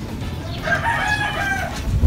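A rooster crowing: one drawn-out call of about a second, starting about half a second in.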